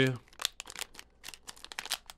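Foil wrapper of a hockey card pack crinkling and tearing as it is peeled open by hand: a run of quick, irregular crackles.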